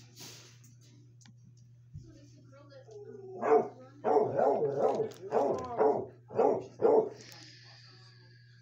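A dog barking, a quick run of about seven barks in the second half, over a steady low hum.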